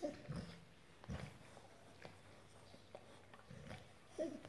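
American Staffordshire terrier giving a few short, soft, low groans while groggy from general anaesthesia.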